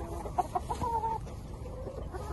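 Chickens clucking: a few short calls in the first half, then quieter.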